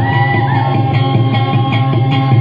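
Amplified guitar playing dayunday music, a steady run of plucked notes over a continuous low drone, with a high held note near the start.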